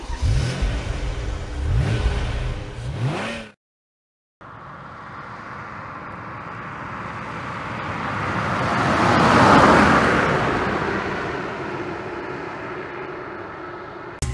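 A car engine revving with rising pitch for a few seconds and cutting off, then after a short gap a car driving past, growing louder to a peak about nine seconds in and fading away.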